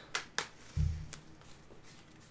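Tarot cards being handled off-camera: a couple of light card snaps, then a short low thump about a second in and a few faint ticks.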